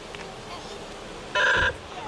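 A vehicle horn gives one short beep, a single steady chord about a third of a second long, about one and a half seconds in.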